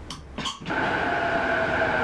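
A short rustle, then an electric commuter train at an underground platform giving a steady two-tone whine from its motors, which cuts off suddenly at the end.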